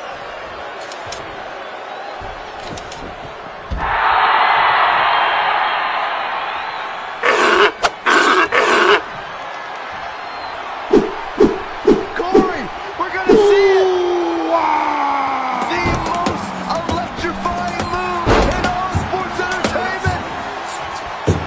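Dubbed pro-wrestling broadcast soundtrack: arena crowd noise and music with edited sound effects. A louder stretch sets in about four seconds in, three short bursts follow, then about five sharp hits and a falling tone.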